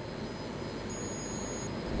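A pause in speech: steady faint background noise of the room and the microphone's sound system, with a thin high steady tone about a second in.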